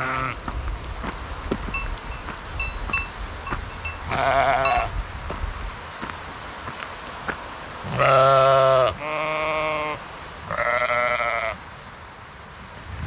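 Valais Blacknose sheep bleating: four separate calls, the loudest about eight seconds in, followed closely by two more.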